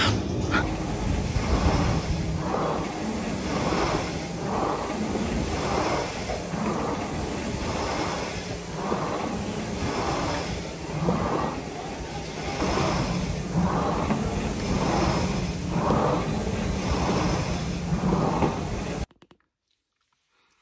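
Treadmill running, with a steady motor hum and a regular beat of footfalls on the belt a little over once a second; it cuts off suddenly near the end.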